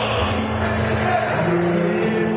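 Mariachi ensemble of violins, trumpets and guitars playing live, holding long sustained notes, with the chord changing about one and a half seconds in.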